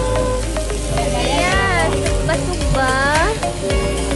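Meat sizzling on a grill pan over a portable gas stove, with background music playing over it.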